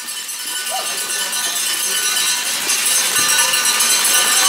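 Ice-arena ambience fading in and growing louder: a constant wash of rink noise with many small clicks and clinks from skate blades and sticks, and indistinct voices now and then.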